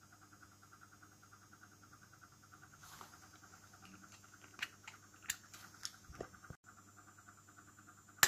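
A faint steady hum with a handful of faint, sharp clicks in the middle seconds.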